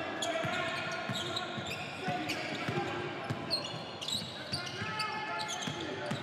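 A basketball being dribbled on a hardwood court, with sneaker squeaks and players' calls in a large, mostly empty arena.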